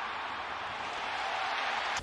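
Ballpark crowd noise: a steady wash of sound from the stands, with no clear peaks.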